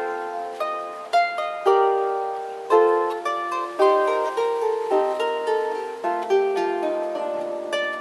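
Solo harp being plucked: a melody over chords, each note ringing on and overlapping the next, with a new strongly plucked note or chord about every half second to second.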